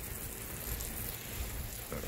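Water spraying onto a lawn, a steady, even hiss.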